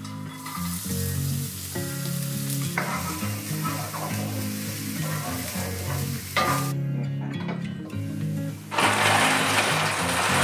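Chopped shallots sizzling in hot oil in a wok as they are stirred with a wooden spoon. The sizzle stops about two-thirds of the way through, and a louder hiss starts near the end.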